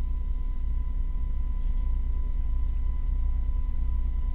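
Steady low electrical hum with a faint thin steady tone above it: the recording's background noise.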